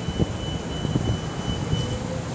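Low rumble of street traffic, with a faint steady high whine that stops near the end.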